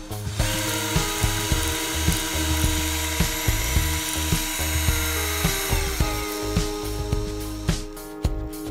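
Cordless drill spinning a 3D-printed plastic double dual-stage cycloidal gearbox, a steady whirring rush that starts about half a second in and stops near the end, over background music with a beat.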